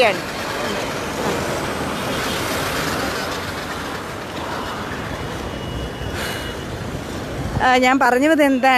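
Road traffic passing on a highway: a steady rush of tyre and engine noise from vehicles going by, a little louder around two to three seconds in. A voice begins just before the end.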